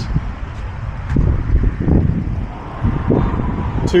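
Low, uneven rumble of wind buffeting the microphone, with road traffic in the background.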